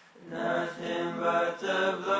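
Layered voices singing a slow hymn melody in harmony, with no drums or bass. The singing pauses briefly at the start and comes back in about a third of a second in, holding notes that change every half second or so.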